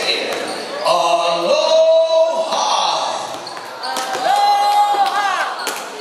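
Basketballs bouncing on a hardwood gym floor in a large, echoing hall during warm-ups, over background voices. Two drawn-out squealing tones of about a second each are heard, one early and one late.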